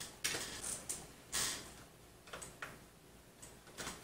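Light clicks and taps of a plastic-and-metal 2.5-inch SSD mounting sled being handled and pressed into place on the back panel of a PC case. There are about ten sharp clicks, irregularly spaced, with a brief scrape about a second and a half in.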